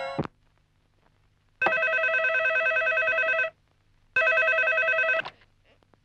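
Telephone ringing twice with a trilling electronic ring, the second ring shorter and cut off as it is answered. The tail of a film song stops at the very start.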